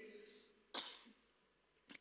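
Near silence, broken about a third of the way in by one short, soft breath sound from a woman at a handheld microphone.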